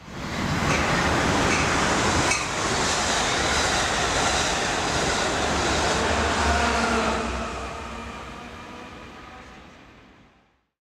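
Passenger train passing close by: a steady rush of noise that swells in at once, with one sharp clack about two seconds in, then fades away over the last few seconds.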